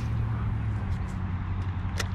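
Steady low rumble and hiss of wind on the microphone, with a few faint ticks.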